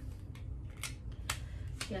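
A few sharp, light clicks, about one every half second, from small makeup packaging being handled, over a low steady hum.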